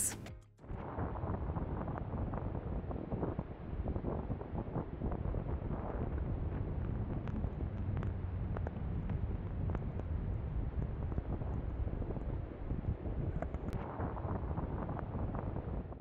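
Strong wind in a snowstorm buffeting the microphone: a steady low rumble full of crackling gusts that starts about half a second in.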